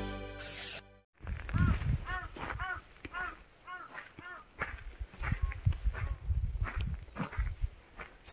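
Intro music fading out and stopping about a second in. Then a crow caws repeatedly, a quick run of harsh calls over about three seconds, over irregular crunching footsteps on gravel.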